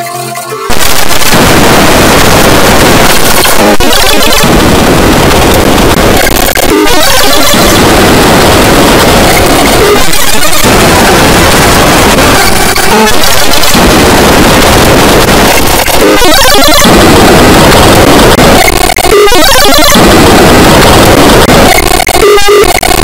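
Extremely loud, clipped, heavily distorted cartoon soundtrack, the kind of 'earrape' audio effect used in effects edits. It turns into a harsh wall of noise less than a second in, with short dips every few seconds.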